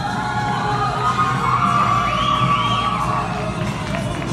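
Dance routine music playing through a hall's PA, with the audience whooping and cheering over it for a couple of seconds in the middle.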